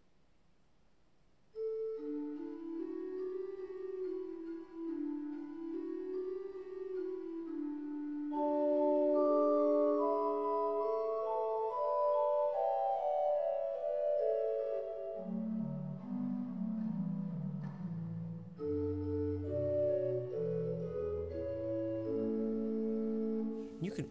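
The 8-foot Spitzgedeckt, a flute stop on the Great of a 1954 Aeolian-Skinner pipe organ, played on its own as a short melodic passage of held notes. It starts after about a second and a half, climbs into the treble, then moves down into the bass before returning to the middle range.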